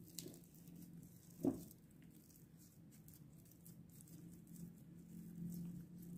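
Faint soft squelching and patting of hands working sticky raisin bun dough against a plastic bowl, with one brief louder sound about a second and a half in. A faint steady low hum runs underneath.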